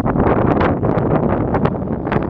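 Wind buffeting the microphone: a loud, rough rushing noise throughout.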